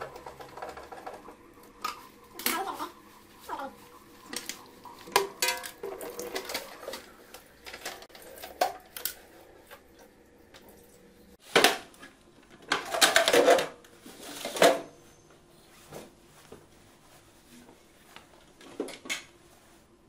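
Plastic casing of an AquaSure water purifier being worked on by hand: scattered clicks, knocks and rattles as it is unscrewed and opened, with a burst of louder clattering a little past halfway.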